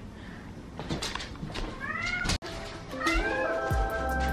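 Hungry domestic cat meowing twice, each call rising in pitch, about two and three seconds in. Background music comes in near the end.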